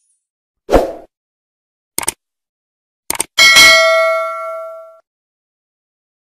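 Subscribe-button animation sound effects: a short thud about a second in, a click near two seconds, and a quick double click just after three seconds. A notification-bell ding follows, the loudest sound, ringing out over about a second and a half.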